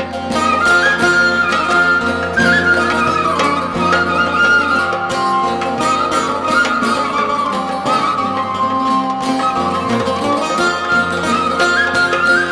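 Instrumental break of a Turkish folk (halk müziği) song: a lead melody with sliding ornaments played over bağlama and a sustained lower accompaniment, with no singing.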